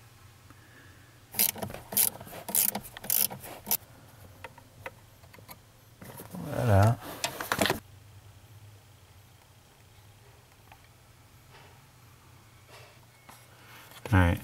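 Sharp clicks and knocks of a plastic retaining clip and the brake light switch mount being worked loose by hand under the dashboard, a quick run of them in the first few seconds. About halfway through comes a brief louder scrape with a short grunt-like voice sound, then only faint ticks.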